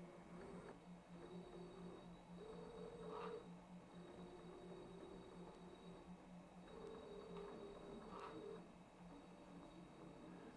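Faint whine of brushless robot-arm joint motors on ODrive controllers, coming in several short stretches of a second or two as the first shoulder axis is jogged back and forth by joystick, over a steady low hum.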